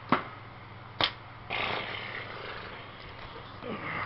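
Two sharp knocks about a second apart, followed by a soft rustling that slowly fades.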